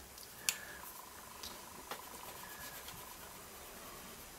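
Quiet handling of a pencil on drawing paper: a sharp tick about half a second in, then a couple of lighter ticks, over room tone with a faint steady whine.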